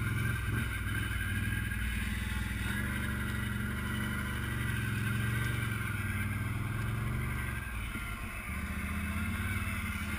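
ATV engine running at a steady low speed while the quad is ridden over a rough dirt trail. The engine note dips briefly about eight seconds in.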